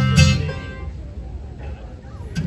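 Acoustic guitar strumming a chord right at the start that rings out and fades, followed by softer picking as a bluegrass band begins a song.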